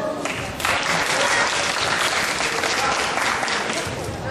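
Audience applauding, a steady clapping that starts about half a second in.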